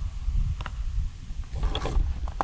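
Wind buffeting the microphone: a steady low rumble, with a single sharp click about two-thirds of a second in.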